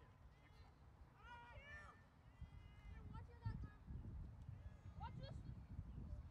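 Faint, distant voices of players and coaches shouting and calling out across a lacrosse field, one call held for about half a second. A low rumble comes up from about halfway through.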